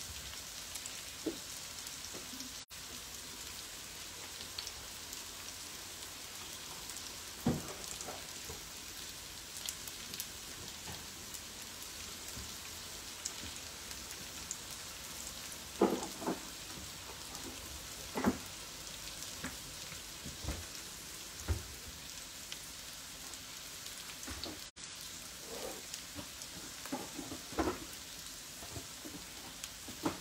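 Chopped onion frying in olive oil in a pan: a steady sizzle, with a few short knocks and pops now and then.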